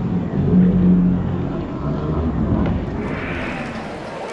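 Ballpark sound played back in slow motion: voices and crowd noise slowed into a deep, drawn-out rumble, turning brighter near the end.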